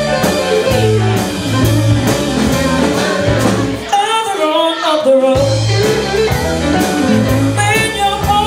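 Live soul-blues band: a woman singing into a microphone over a semi-hollow electric guitar, bass and a steady beat. About halfway through the bass and beat drop out for roughly a second while her voice carries on, then the band comes back in.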